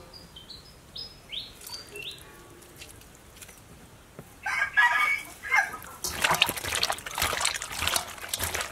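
A few short falling bird chirps, then a rooster crowing for about a second and a half near the middle. In the last couple of seconds come wet squelching and sloshing as hands knead and rub pig stomach and intestines with lime and water in a steel bowl to clean them.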